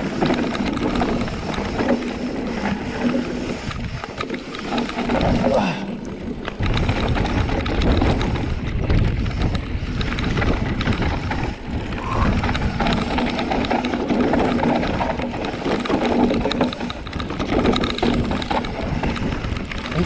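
Mountain bike riding fast downhill on a dirt trail: tyres rolling over dirt and stones with the bike rattling over the bumps, and wind buffeting the microphone. The wind rumble gets much heavier about six seconds in.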